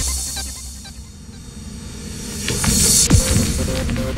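Goa trance track in a breakdown: the beat and bass drop out at the start, leaving a quieter synth bed. A rising hiss swell builds toward a falling low swoop about three seconds in, after which a repeating synth note pulses steadily.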